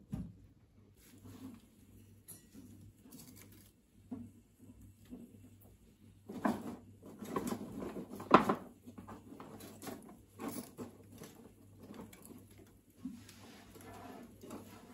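Light scattered crackles and clicks from a wood fire burning under a lidded pot. About six seconds in comes a busier spell of rustling and knocking of dry kindling sticks being handled, the loudest a single sharp knock a little past eight seconds.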